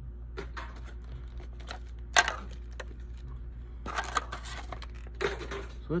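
Plastic lure packaging crinkling and clicking as a hollow-body frog lure is worked out of it by hand: irregular sharp clicks and crackles, the loudest about two seconds in.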